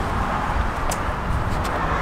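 Steady outdoor background rumble, like traffic noise, with two faint clicks about a second apart.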